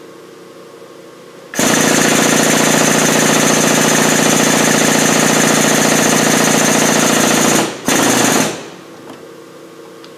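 The powered pump of a hydraulic shop press runs loud and fast-pulsing, driving the ram down toward a tapered wrist pin bushing tool on a connecting rod. It starts abruptly about a second and a half in and cuts out briefly near eight seconds. It runs again for under a second, then stops.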